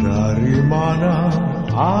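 An Indonesian pop song with a steady bass line under a sung melodic line; the lead vocal comes in near the end.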